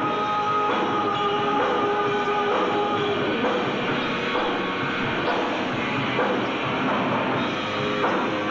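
Hard rock band playing live, with notes held for the first three seconds over a dense, steady wash of band sound.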